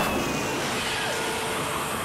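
A train going by close to the microphone, a steady rushing noise of its cars passing, heard from a video's soundtrack played over a hall's speakers.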